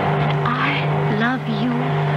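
Steady drone of a small plane's engine, as heard from inside its cabin, with a voice speaking softly over it through the middle.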